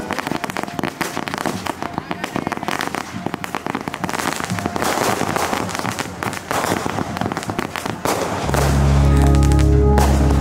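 Fireworks going off in a dense run of rapid crackles and pops, fired from the ground and bursting overhead. Near the end, music with a heavy bass comes in over them.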